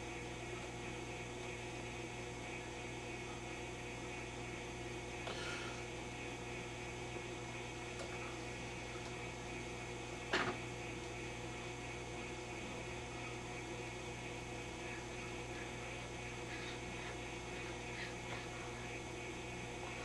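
Low, steady mains hum from a running Admiral 24C16 tube television whose programme sound is not working, with one brief click about ten seconds in.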